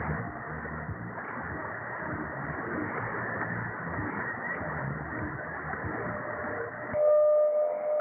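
Shortwave AM radio static on 7235.6 kHz through a Perseus SDR receiver: a steady hiss of band noise with no clear programme. About seven seconds in, a steady whistle cuts in and the sound gets louder. This is a heterodyne beat from a second carrier appearing just beside the tuned frequency.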